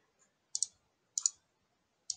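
Computer mouse clicking twice, about half a second in and again just over a second in, each a quick sharp press-and-release.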